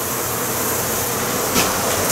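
Steady buzzing of a large honey bee colony, thousands of bees flying and crawling together in an enclosed room. A brief knock comes about one and a half seconds in.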